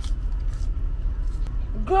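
Steady low rumble of a car's cabin, the engine and road noise heard from inside, with a woman's voice coming in near the end.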